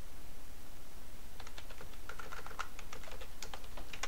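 Typing on a computer keyboard: a quick run of keystrokes starting about a second and a half in, as a short terminal command is entered, over a steady low background hum.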